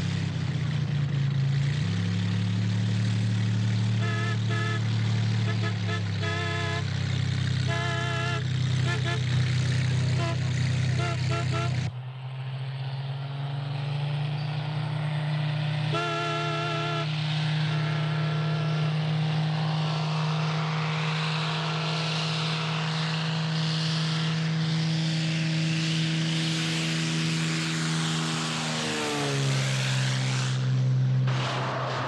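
Single-engine light plane's propeller engine droning steadily, with snatches of a wavering musical melody over it. The sound cuts abruptly partway through and resumes at a similar drone.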